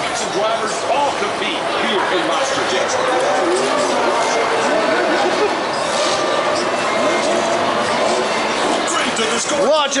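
Chatter of several people's voices, with a man's voice calling out near the end.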